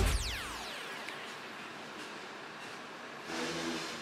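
A falling whoosh as background music ends, then faint street traffic noise by a city bus. Near the end a low engine hum rises.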